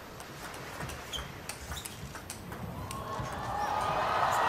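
Table tennis ball clicking off the rackets and the table in a fast doubles rally, the hits coming at an uneven pace. Background hall noise swells near the end.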